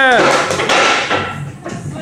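A long held shout ends a moment in, followed by metallic knocks and rattling from the heavily loaded barbell and its plates as a 220 kg squat is finished and walked back toward the rack.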